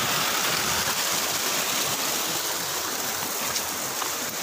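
Steady rushing of flowing stream water.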